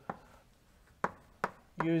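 Chalk tapping sharply against a blackboard while writing, three distinct taps spread across two seconds.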